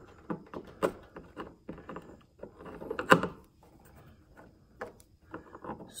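Scattered small clicks and plastic knocks of a flat-blade screwdriver working at a push-in plastic retaining clip in a Tesla Model 3's front wheel-arch liner, trying to pry it out. The sharpest knock comes about three seconds in.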